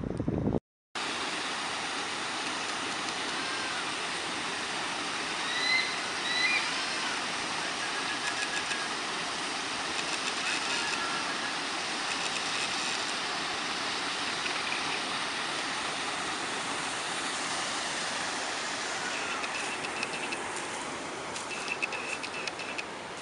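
Water rushing steadily through a stone weir outlet as an even, unbroken roar that starts suddenly about a second in.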